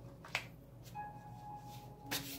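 A single sharp snap of a paper index card about a third of a second in, as the card is laid down on a stack of cards, over faint background music that holds a soft note from about a second in.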